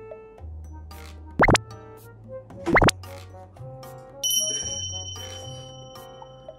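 Light background music with added comic sound effects: two quick upward pitch sweeps about a second and a half apart, the loudest sounds here, then a bright bell-like ding that rings on and fades.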